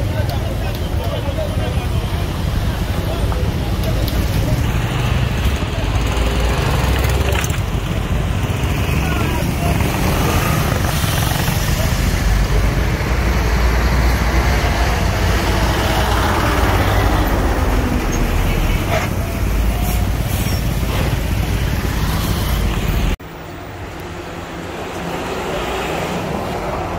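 Road traffic: vehicle engines running with a heavy, steady low rumble and faint voices in the background. About 23 seconds in it cuts off suddenly to quieter street noise.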